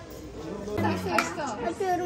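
Indistinct voices talking in a dining room, starting about a second in after a quieter opening.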